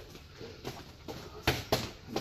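Boxing gloves landing in close-range sparring: a few sharp smacks, the two loudest in quick succession about a second and a half in.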